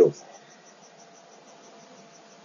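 Faint background of a video-call line between words: a low hiss with a faint steady hum and a faint high-pitched ticking about six times a second. A man's voice breaks off right at the start.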